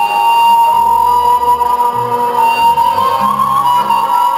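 Romanian folk dance music: a high melody in long held notes over a bass line that changes note about once a second.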